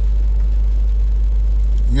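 Steady low rumble inside a car's cabin, with a faint hiss above it. Near the end it gives way to a man's voice.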